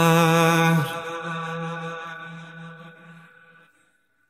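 Isolated male lead vocal holding one long sung note at a steady pitch, with no backing instruments. The note fades out over about three seconds and is gone just before the end.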